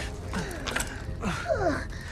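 A few short creaks over a steady low rumble.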